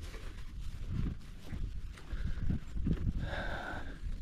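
Footsteps of people and a pack donkey walking on a grassy farm track: soft, irregular thuds and rustling, with a brief higher-pitched sound a little after three seconds in.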